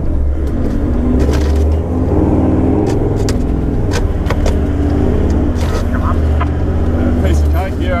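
Toyota LandCruiser engine running steadily under load while driving slowly along a soft sand track, with scattered sharp knocks and clicks from the vehicle jolting over the rough ground.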